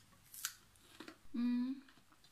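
A crisp, short crunch of a bite into raw vegetable about half a second in, a faint click near a second, then a hummed "mm" while chewing.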